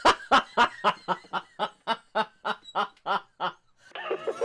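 A man laughing: a long run of evenly spaced ha-ha pulses, about four a second, that grows quieter and trails off near the end.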